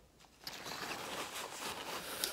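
Paper napkin rustling and crinkling as it is picked up and wiped over the mouth, starting about half a second in.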